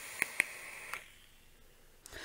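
A draw on a squonk vape mod: the soft hiss of air pulled through the atomizer, with three small clicks, stopping about a second in.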